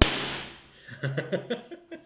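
A soap bubble of oxyhydrogen (hydrogen and oxygen from electrolysed water) ignited by a blowtorch goes off with a single sharp, loud bang that rings out for about half a second. About a second in, a man laughs briefly.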